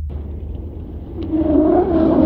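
Sci-fi spacecraft engine sound effect: a deep steady rumble that swells into a louder droning hum about a second and a half in.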